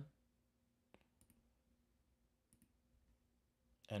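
Near silence with a few faint clicks: a pair about a second in and another about two and a half seconds in.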